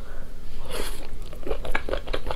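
Close-up sounds of biting and chewing meat off sauce-glazed ribs: a quick run of crunches and clicks that starts a little under a second in.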